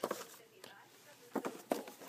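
Cardboard jewelry boxes being handled and moved, with a few light knocks and rustles, several close together near the end.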